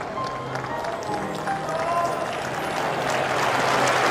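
Background music over a tennis crowd's noise, which thickens into applause toward the end.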